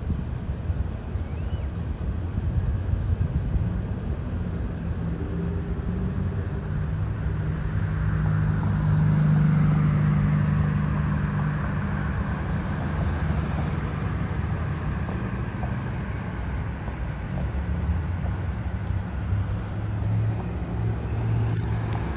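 Cars running and driving through a parking lot over a steady low rumble; one vehicle's engine swells to its loudest about nine to ten seconds in as it passes close, then fades.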